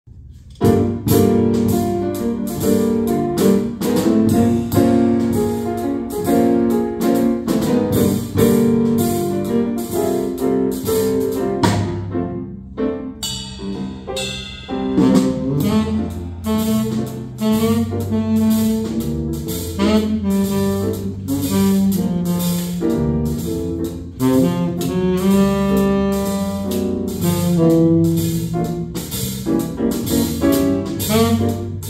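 A small jazz combo playing live: saxophone leading over grand piano, electric bass guitar and drum kit, the drums keeping an even pulse on the cymbals. The band comes in about half a second in and briefly thins out at around twelve seconds before carrying on.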